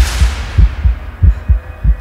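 Low, rapid heartbeat-like thumps of trailer sound design, about three a second, with a hissing wash that fades over the first half second.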